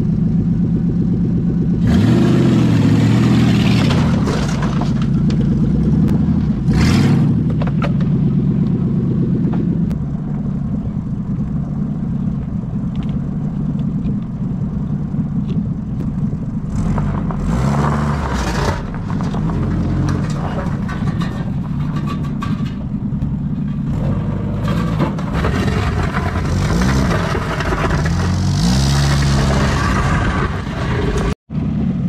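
A car engine revving hard under load, its pitch rising and falling several times, with short bursts of scraping, rushing noise in between.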